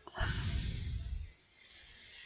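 A man's breath into a close microphone, about a second long, followed by a fainter, hissy breath.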